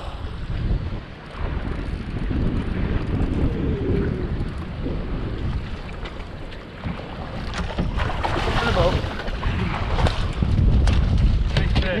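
Wind buffeting the microphone over the sound of sea water washing along a boat's hull, gusting up and down, with a few sharp knocks near the end.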